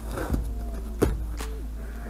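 A large knife cutting into a cardboard shipping box, scraping and slicing through the tape and cardboard with a sharp snap about a second in.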